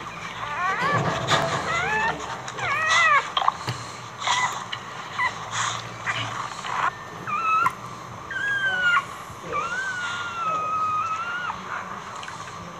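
Boxer dog whining and whimpering in labour as she gives birth standing up: a run of short, high, rising-and-falling whimpers, then a longer whine that slowly falls in pitch near the end.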